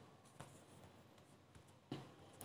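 Near silence: room tone with two faint clicks, one about half a second in and a slightly louder one near the end.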